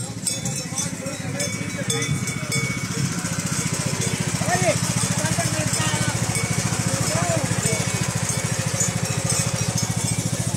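Riding lawn mower's small engine running steadily as the mower drives past close by, getting louder about a second and a half in.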